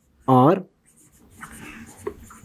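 Whiteboard marker writing on a whiteboard: faint scratchy strokes begin about a second in, after a short spoken word.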